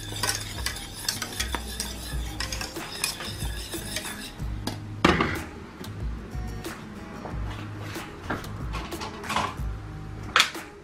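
Wire whisk clinking and scraping against a stainless steel saucepan while sauce is stirred, a rapid run of small metallic clicks. One louder clank comes about five seconds in, when the whisk is left to rest in the pan.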